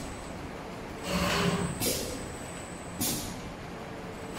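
Automatic hot-knife webbing cutting machine working through one feed-and-cut cycle: a whirring swell about a second in, a short sharp stroke just before the two-second mark and a sharp click at three seconds, over a faint steady high whine. The same cycle repeats about every three seconds.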